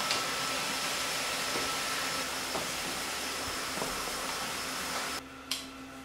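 Large-format roll laminator running: a steady whirring hiss with a faint high whine, which cuts off abruptly about five seconds in, followed by a single click.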